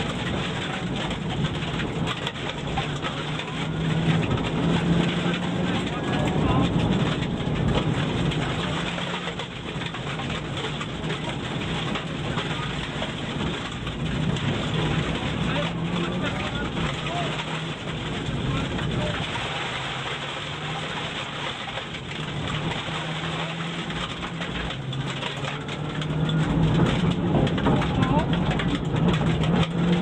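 Subaru Impreza N4 rally car's turbocharged flat-four engine heard from inside the cabin under full stage pace, its pitch repeatedly rising and dropping as it is driven hard through the gears.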